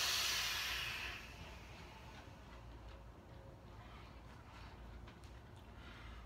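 A hard, long breath on a high-powered sub-ohm vape: a sudden hiss of rushing air that fades away over about a second and a half, followed by a low steady background.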